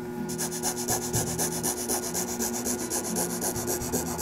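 Excalibur scroll saw cutting through a large wooden puzzle board: the reciprocating blade makes a rapid, even rasping chatter over a steady hum. This is the initial cut that splits the board into halves.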